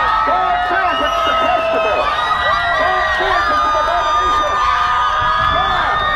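Parade crowd cheering and whooping, many voices overlapping at once, with long steady high tones running through it.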